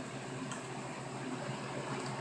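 Steady background hiss of room tone, with a faint click about half a second in.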